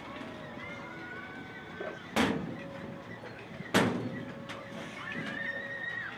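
Two sharp shots from compressed-air apple cannons, about a second and a half apart.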